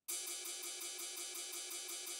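Ride cymbal sample from a UK garage drum kit, played alone in a quick, even run of repeated hits. Its volume envelope has an increased attack, which softens the start of each hit.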